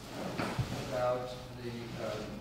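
Indistinct voices of people talking in a room, with a brief low knock about half a second in.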